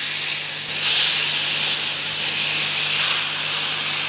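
Bone-in lamb pieces sizzling as they sear fat side down in a hot frying pan of rendered lamb fat. It is a steady hiss that gets louder about a second in as more pieces go into the pan.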